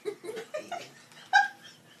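A husky vocalizing in protest at being moved: a quick run of short calls that climb in pitch, then one sharp, high yelp about a second and a half in.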